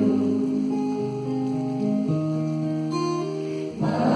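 Acoustic guitar playing chords on its own, with no voice, the chord changing about once a second.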